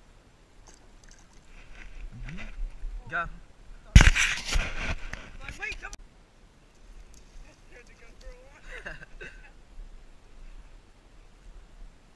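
A loud splash about four seconds in, as a hand-held largemouth bass is let go into the pond and hits the water, the splash trailing off over about two seconds.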